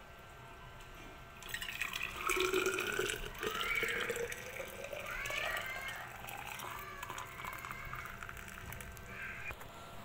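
Just-boiled water poured from a steel pot into a steel-lined vacuum flask, starting about a second and a half in. The splashing, gurgling fill note rises in pitch as the flask fills.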